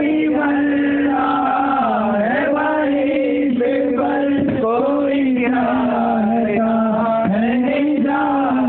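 A singer's voice chanting a devotional melody in long, drawn-out held notes that slide and bend between pitches, with no clear words.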